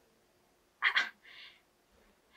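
A person's brief vocal sound about a second in, followed by a faint breath.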